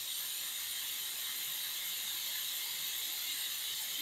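Pneumatic vacuum brake bleeder hissing steadily as compressed air runs through it, drawing old brake fluid out of a motorcycle's rear brake caliper through the opened bleeder screw.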